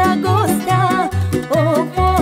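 A Romanian folk song: a woman singing an ornamented melody over band accompaniment, with a bass line stepping steadily on the beat.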